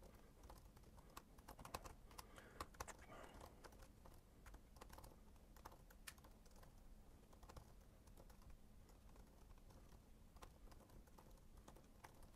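Faint typing on a computer keyboard: irregular, scattered keystrokes.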